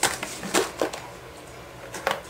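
Handling noise: a few short knocks and rustles, the loudest about half a second in, as things are picked up and moved close to the microphone.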